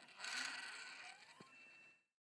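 Sky-Watcher NEQ6-Pro computerised equatorial mount's motors slewing the telescope toward the first alignment star: a faint mechanical whirr that starts just after the beginning and slowly fades, with a single click about one and a half seconds in.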